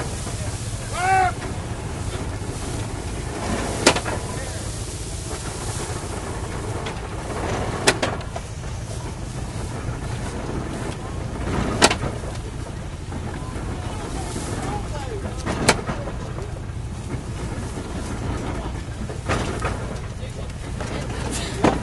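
Belt-driven 1910 Columbia hay baler running, its plunger striking a sharp knock about every four seconds as it packs hay into the bale chamber, over the steady hum of the tractor engine driving it.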